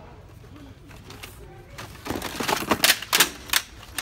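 Handling noise from plastic and cardboard toy packaging being grabbed and shifted on a store shelf. About two seconds in comes a rapid, irregular run of sharp clicks and crinkles.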